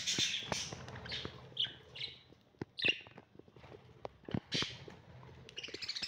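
A cage of budgerigars chirping and chattering: a run of short, high calls coming at irregular intervals, with a few sharp ticks among them.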